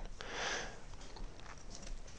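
A short breath through the nose close to the microphone, lasting about half a second, followed by a few faint light ticks.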